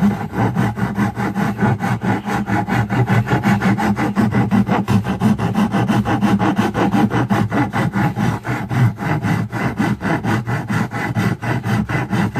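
Coarse half-round hand file rasping across the curved edge of a wooden guitar body in rapid, even back-and-forth strokes, about four to five a second.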